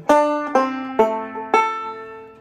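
Recording King RK-R20 five-string resonator banjo picked slowly, four single notes about half a second apart, each ringing and fading. It is a slow-tempo demonstration of an alternating thumb-index, thumb-middle pattern on the third, third, fourth and first strings.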